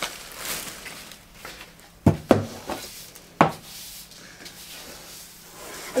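Black plastic bin bag rustling as it is handled, with three sharp knocks about two and three and a half seconds in.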